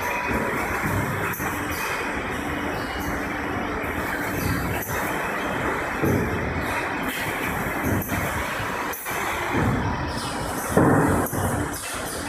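Automated packing-line machinery running: roller conveyors carrying cases give a steady rumble with a faint hum, with a few louder clattering swells about six seconds in and near the end.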